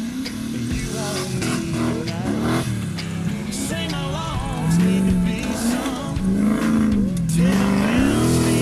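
An off-road 4x4's engine revving up and down hard as the vehicle spins and slides on dirt. A country song with singing plays over it.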